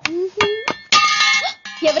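A metallic clang with a long ringing tail of several steady tones, about a second in, after a few short knocks. This is a comedy sound-effect stinger on the film soundtrack.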